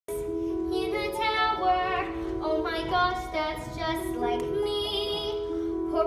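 A girl singing a slow solo over an instrumental accompaniment of held chords, her voice wavering on the long notes.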